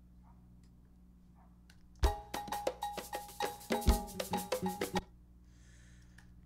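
A sampled record playing back in a DAW: a short run of quick percussion hits, about five a second, with a ringing bell-like pitch over them, starting about two seconds in and cutting off abruptly about three seconds later.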